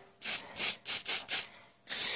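Aerosol can of Movil anticorrosion spray, fitted with an extension straw, giving about four short hissing bursts into a body hole and around the suspension bolts.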